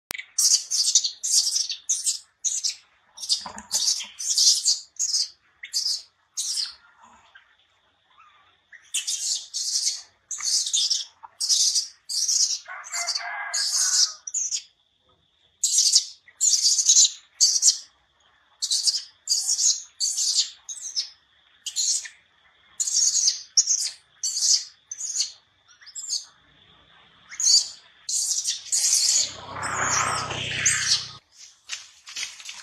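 Short, high-pitched chirping calls from a small animal or bird, repeated about one to two times a second with brief pauses, over a faint steady high whine. A louder, deeper sound comes in just before the end.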